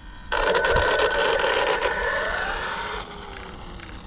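A car passing on the road: tyre and engine noise that starts suddenly, holds, then fades after about three seconds, with a tone sliding down in pitch as it goes by.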